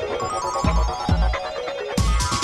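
Electronic dance music played through a club sound system in a DJ mix: deep kick drums a few times a second under steady bell-like synth tones and crisp hi-hats.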